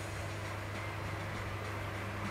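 Steady room background noise: an even hiss with a constant low hum underneath, no distinct events.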